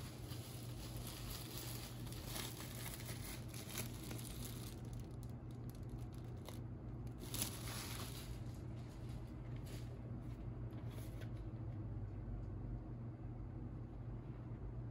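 Crinkling and rustling of a vinyl record's glossy plastic-wrapped sleeve being handled, with one louder rustle about seven seconds in and quieter handling after it.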